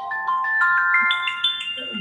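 A phone ringtone: a rising run of bell-like notes, each held on as the next one sounds.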